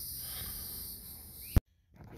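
Steady chorus of insects, crickets by their sound, in the background; about one and a half seconds in a single sharp click, then the sound drops out abruptly to silence.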